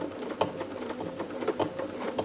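Sewing machine running for free-motion embroidery with the feed dogs lowered, the needle stitching lettering through a quilt. It makes a quick, irregular ticking over a faint steady hum.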